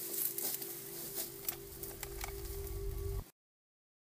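A low, steady background-music drone over faint outdoor hiss and a few small clicks, with a low rumble swelling near the end. The sound cuts off suddenly to silence a little past three seconds in.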